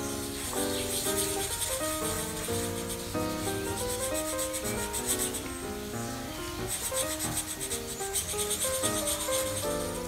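Felt-tip marker scrubbing back and forth on paper in quick, repeated strokes, colouring a small shape solid black, with a few short pauses. A simple melody of background music plays throughout.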